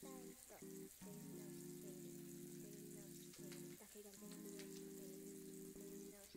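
Soft background music of sustained low chords that break off and resume every second or so. Under it runs a faint, crackly hiss of water running into a bathroom sink.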